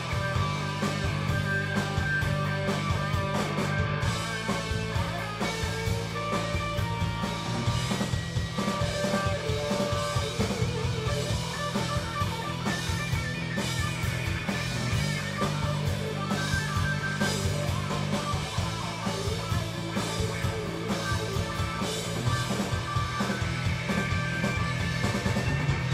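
Live rock band playing: electric guitars over a drum kit, with a steady driving beat.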